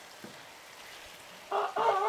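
A rooster begins crowing about one and a half seconds in, after a quiet stretch: a loud, held call with a drawn-out flat tone.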